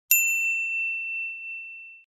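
A single bright chime sounding the logo sting: one sharp ding that rings on as a high, slowly fading tone.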